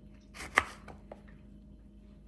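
Kitchen knife cutting a slice off a lemon and knocking down onto a plastic cutting board once, about half a second in, followed by a couple of faint ticks.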